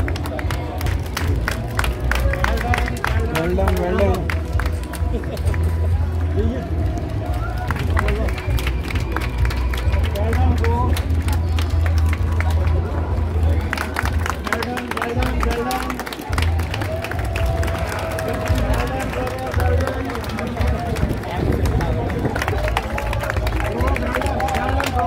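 Spectators clapping and calling out encouragement to passing runners at a race finish chute, with music playing underneath.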